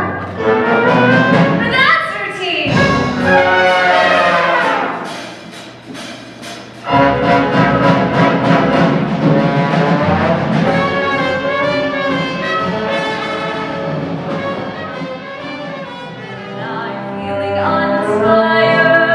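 Stage-musical music played by an orchestra with prominent brass, with sung voices in the first few seconds. The music fades down about five seconds in and comes back in suddenly about seven seconds in, and a new number starts near the end.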